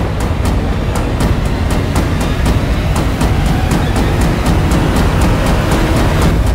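Dramatic background score: a loud, low rumbling drone under fast, even percussive strokes, about four a second.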